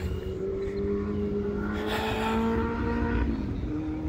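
A steady motor hum over a low rumble, its pitch creeping slightly upward before part of it falls away near the end.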